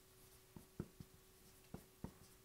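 Faint strokes of a felt-tip marker writing on a whiteboard: four short squeaks and taps, spaced unevenly.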